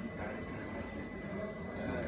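Dental implant motor driving a contra-angle handpiece at 50 rpm while the osteo-shaper drill turns into a foam block: a faint, steady high whine over low background noise.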